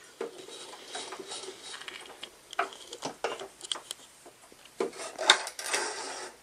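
Small clicks and rustling of handling as a stitched fabric sample is lifted out from under the presser foot of an Elna 340 sewing machine and pulled away; the machine is not running. The clicks are irregular, a cluster about five seconds in the loudest.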